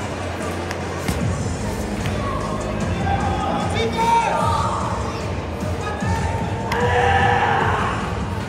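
Busy sports hall ambience: crowd voices and background music, with a few sharp thumps about a second in and again near the end.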